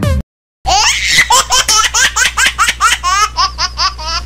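High-pitched laughter: a fast run of short 'ha' syllables, about five a second, each sliding in pitch. It starts about half a second in, right after the background music cuts off.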